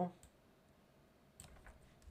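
A few faint clicks from a computer mouse: one just after the start and a small cluster about a second and a half in.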